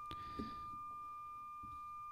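A steady 1200 Hz test tone, the Bell 202 mark tone used for APRS, generated by a Mobilinkd TNC3, transmitted by a Yaesu FT-65R handheld and heard through the speaker of a second handheld radio receiving it. A faint click comes just after the start.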